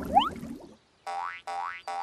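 Cartoon boing sound effects: a short springy tone sweeping upward, repeated about two and a half times a second and starting about a second in, to go with costumed cartoon children hopping along.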